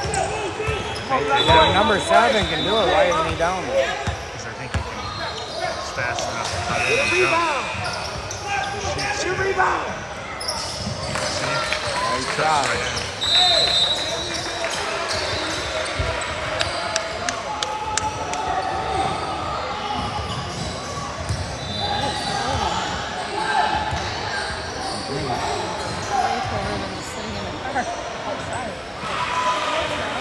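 A basketball bouncing on a hardwood gym floor amid indistinct voices of players and spectators, echoing in a large gymnasium.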